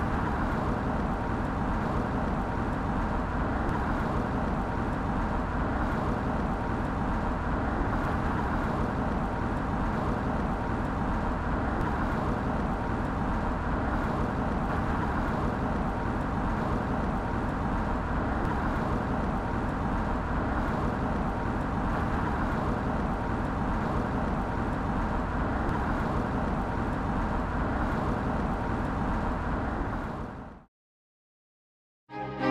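Steady road noise of a car driving at constant speed: tyre roar and wind rush with a faint hum.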